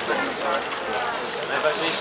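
Indistinct voices of several people talking at once, none of it clear enough to make out.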